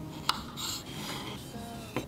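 Kitchen knife cutting dried vanilla bean pods on a wooden cutting board: a sharp tap of the blade on the board about a third of a second in and another near the end, with a short rasping cut in between.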